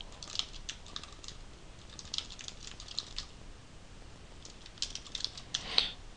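Computer keyboard being typed on in short runs of keystrokes, with a pause of about a second near the middle.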